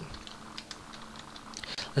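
Computer keyboard being typed on: a few faint, scattered keystroke clicks.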